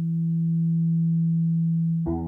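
A single low tone held steady in a slideshow's background music, like a sustained synthesizer note; fuller music with more notes comes in right at the end.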